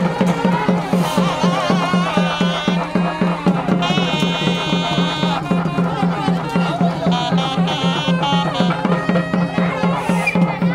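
Traditional South Indian festival music: a wavering melody with held notes, over a steady low drone and fast, regular drumming.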